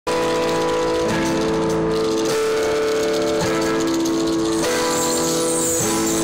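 Live rock band playing a song's instrumental intro, loud, with held chords that change about once a second.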